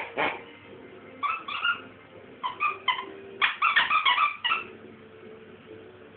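Squeaky toy pig squeaking as a dog chews it, in three runs of short squeaks, the last and longest about three and a half seconds in. A knock comes right at the start.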